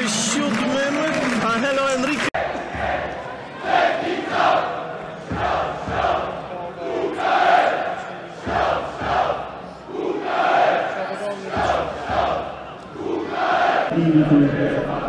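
Football crowd chanting in unison from the stadium stands, in shouted phrases that swell and fall about once a second.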